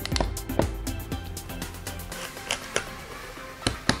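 A steel Chinese cleaver chopping through a crab onto a wooden chopping board: a handful of short, sharp chops spread through, the last two close together near the end.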